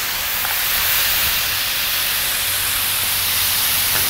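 Marinated kalbi (thin cross-cut beef short ribs) sizzling steadily on a hot Blackstone flat-top griddle. The strong, even sizzle is the sign of a griddle hot enough to sear.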